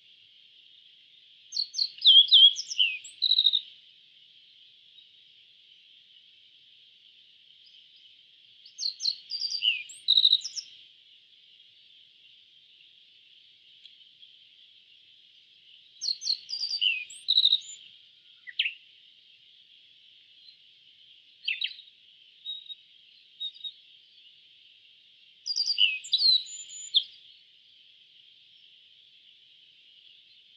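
Yellow-breasted bunting singing: four short phrases of quick sweet notes, about one every eight seconds, with a few single call notes between the third and fourth. A steady high insect-like drone runs underneath throughout.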